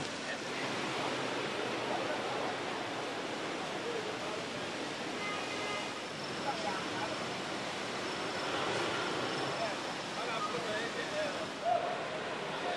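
Steady outdoor background noise, a continuous even wash with faint, indistinct voices of people in it; no engine sound stands out.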